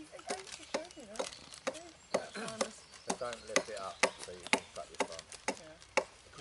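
Knife whittling a wooden bow drill spindle: a run of short, sharp cuts, about three a second and unevenly spaced, as the end is carved into a taper.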